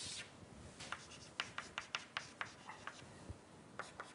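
Chalk on a blackboard: a drawn scraping stroke right at the start, then a quick run of short chalk taps and scratches, several a second, as marks are written.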